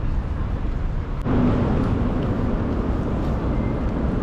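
City street ambience: a steady low rumble of traffic. The sound changes abruptly and gets a little louder about a second in.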